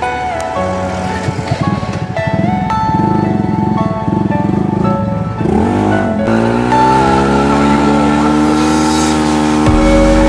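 Background music over a motorcycle engine under way. About six seconds in, the engine note dips briefly, then rises steadily as the bike accelerates.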